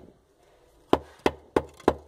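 A wooden straightedge knocking against a brick course as it is worked along to check that the bricks are level. Four sharp knocks come about three a second, starting about a second in.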